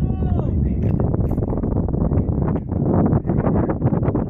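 Young men's voices on an outdoor basketball court: a drawn-out, wavering shout in the first half second, then background talk and scattered short knocks, with wind buffeting the microphone.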